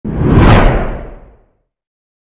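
A whoosh sound effect with a deep low rumble, swelling to its loudest about half a second in and fading out by about a second and a half.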